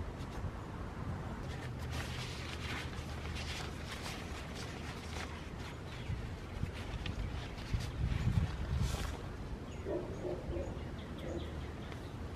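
A fabric garden flag rustling and a metal flag stand lightly scraping as the flag is slid onto the stand, over a steady low background hum.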